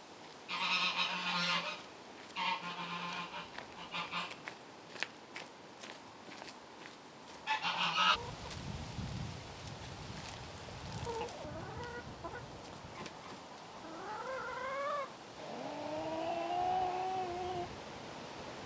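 Brown laying hens calling: a few short rising calls, then a longer drawn-out call near the end. In the first half, before the hens, there are a few short bursts of rustling handling noise.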